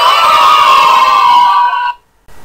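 Elephant trumpeting sound effect: one loud call lasting nearly two seconds that cuts off abruptly near the end.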